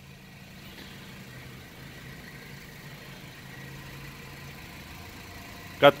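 2012 Honda Fit Sport's 1.5-litre four-cylinder VTEC engine idling with a low, steady hum.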